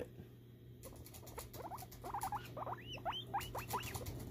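Guinea pig crying: a rapid series of short, high-pitched squeaks that each rise and fall, starting about a second in and coming several to the second.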